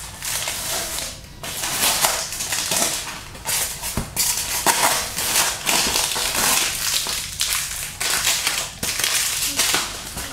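Packing tape being peeled off a polystyrene foam box, a rasping rip in irregular bursts, with the foam rubbing and creaking under the hands. A sharp click about four seconds in.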